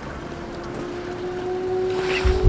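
Wind rumbling on the microphone outdoors, a steady low noise. A steady held tone comes in about a third of a second in and carries on.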